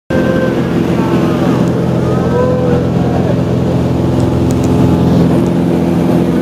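Small propeller plane's engine droning steadily, heard from inside the cabin, with a few higher gliding calls over it.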